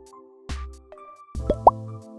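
Soft background music for a children's cartoon, with sound effects: a sharp click about a quarter of the way in, then two quick rising-pitch pops near the end.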